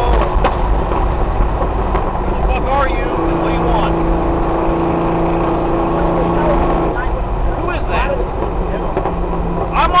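1993 Corvette's LT1 V8 running at speed on a track, heard from inside the car with heavy road and wind noise; a steady hum holds from about three seconds in to about seven.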